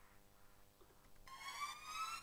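Near silence, then about a second and a quarter in, an uplifter riser effect from the track plays back: a single synthetic tone gliding steadily upward in pitch and growing louder.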